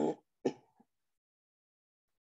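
A woman clearing her throat in two short rasps about half a second apart.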